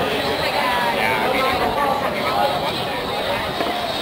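Indistinct voices of people talking, a steady mix of chatter.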